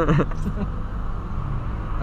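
Low, steady engine and road hum inside the cabin of a 2008 VW Polo Sedan creeping forward at low speed, with a brief laugh at the very start.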